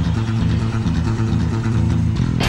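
Rock band playing live: distorted electric guitar and bass holding a low, sustained riff.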